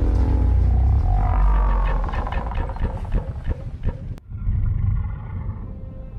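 Film soundtrack of a giant-monster fight: a monster's roar sliding down in pitch over a deep rumble, with a quick run of sharp hits. About four seconds in it cuts off abruptly to music.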